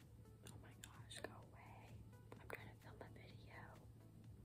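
Faint whispering close to the microphone, with a few small clicks.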